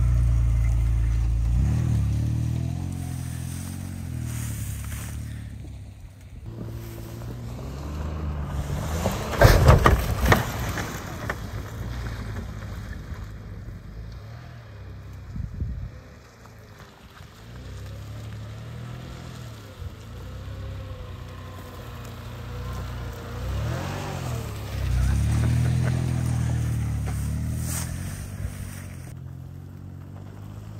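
Hyundai SUV's engine running and revving as it drives across a rough field, its pitch rising and falling with the throttle several times. A loud burst of knocks comes about ten seconds in.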